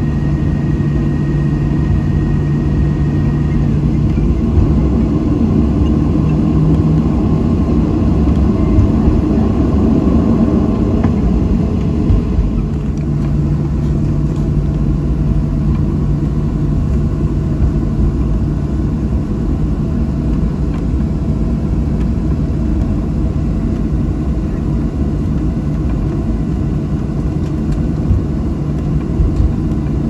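Boeing 737-800's CFM56-7B jet engines at taxi idle heard from inside the cabin, a steady drone with a low hum, as the airliner taxis after landing. A faint high whine fades out a few seconds in, and a few light knocks come near the end.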